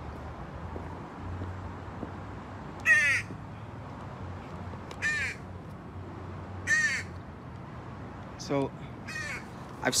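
Crow cawing: five short caws about two seconds apart, the last two coming closer together.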